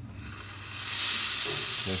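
Steam wand of a La Pavoni Professional lever espresso machine, its steam valve opened by hand to test the steam. A hiss of steam builds over the first second to a loud, steady hiss.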